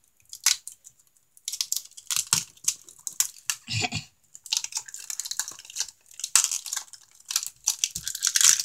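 Monster High Minis blind-bag wrapper crinkling and tearing as hands work it open: a couple of crackles at first, then irregular crackling from about a second and a half in.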